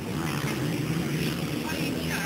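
A pack of motocross bikes racing some way off, their engines blending into one steady running note.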